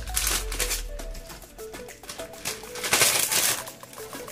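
Light background music with short repeated notes, over the crinkling of a plastic zip-top bag being handled, loudest about three seconds in.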